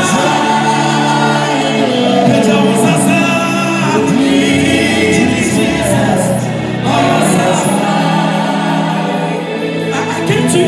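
Live gospel worship music: a lead singer with backing singers over a band with keyboard and drums, played through a stage sound system.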